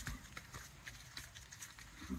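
Faint, irregular hoof steps and shuffling of horses moving about on wet sand, with light scattered clicks and rustling.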